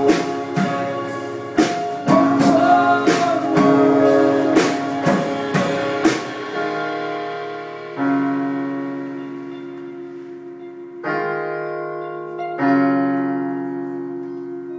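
Live band playing: strummed acoustic guitar and electric guitar over drum hits for about the first six seconds. Then the drums and guitars drop out and a stage keyboard holds piano chords alone, striking a new chord three times and letting each ring and fade.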